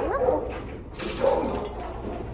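A dog in a shelter kennel whining briefly with a rising pitch, then giving a sudden bark about a second in.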